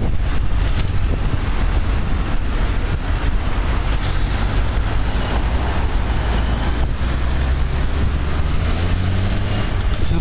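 Wind rushing over the microphone of a camera on a moving bicycle, a steady loud rumble, with the noise of city traffic around it.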